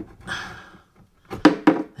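A pipe fitting on the underside of a bath tap being unscrewed by hand in a cramped space under the bath: a short rustle, then two sharp knocks close together about a second and a half in as the fitting comes loose.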